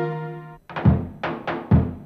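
Folk music: a sustained passage of held tones fades out about half a second in, then a drum starts a rhythm of heavy low beats a little under a second apart with lighter strokes between.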